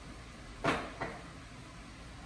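A sharp knock, with a weaker knock about a third of a second later, over a faint steady low hum.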